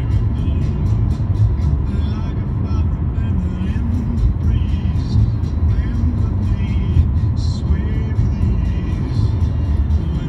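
Steady low rumble of road and engine noise inside a car's cabin as it drives along a highway in traffic, with a faint voice or music running underneath.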